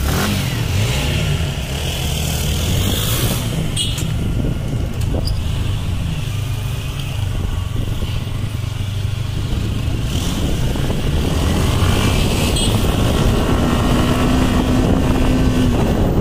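Motorcycle engine running steadily as the bike rides along, with wind noise on the microphone.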